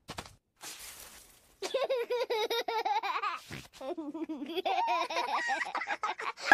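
Cartoon children's voices laughing in two bouts, the first a quick run of high 'ha-ha' pulses, the second lower and longer.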